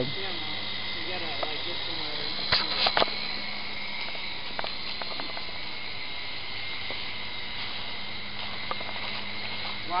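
Syma S301G radio-controlled helicopter flying overhead, its small electric motors and rotors giving a steady whine and hum. A few sharp knocks come about two and a half seconds in.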